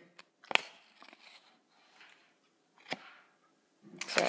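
Playing cards flicked by fingers in a card-change move: a sharp snap about half a second in and a quieter one near three seconds, with faint handling rustle between.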